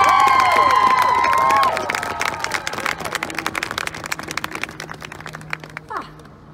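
A marching band's winds holding a loud final chord, which cuts off about two seconds in. The crowd applauds and cheers over it, and the clapping carries on and thins out after the chord ends.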